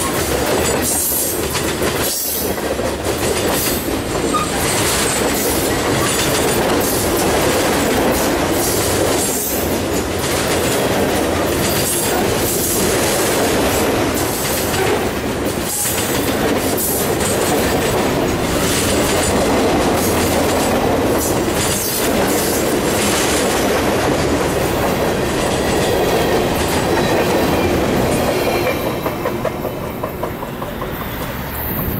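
Freight train cars, covered hoppers and boxcars, rolling past close by: a steady rumble of steel wheels on rail with irregular clicks over the rail joints. It fades near the end as the last car passes.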